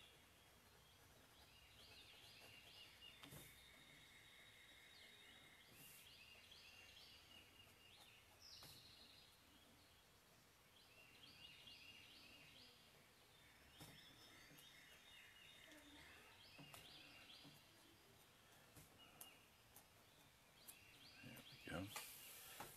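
Near silence, with faint birdsong in the background: repeated short high chirping phrases, and a few faint ticks.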